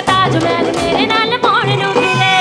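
Live Punjabi song played over a PA: a woman sings a held, ornamented melody line with wavering pitch over a band with a steady drum beat.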